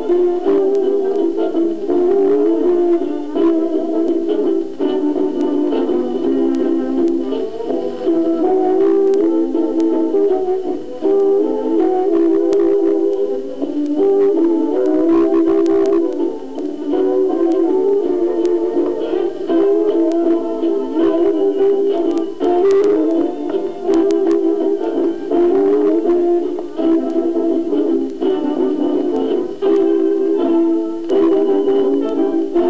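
Instrumental dance-band music played from a 1929 78rpm record, the melody moving continuously with no vocal, and scattered surface clicks.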